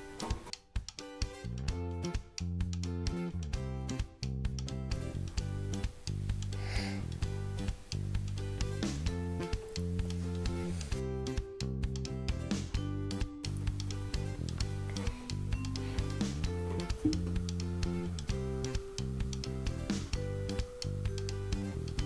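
Background music: a plucked-guitar tune with a steady, even rhythm.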